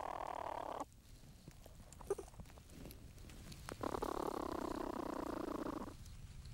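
Young platypus purring in the nesting chamber, in two stretches: one stopping within the first second and one running for about the last two seconds. A few small clicks fall between them.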